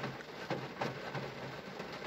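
Quiet background inside a parked car, a faint steady low hum with a few soft clicks.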